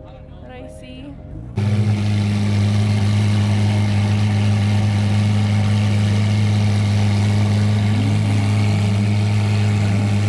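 A supercar's engine idling loud and steady close by, cutting in abruptly about a second and a half in. Before it, background music with horns plays briefly.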